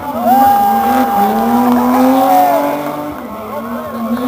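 Racing car engine accelerating hard, its pitch climbing in long pulls and dropping back at each gear change, getting somewhat quieter near the end.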